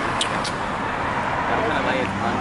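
Steady street traffic noise from passing cars, with a couple of brief clicks in the first half second.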